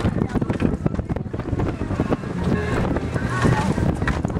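Wind buffeting the microphone on a boat under way, over a steady low rumble of the boat and rushing water. Faint voices come through in the second half.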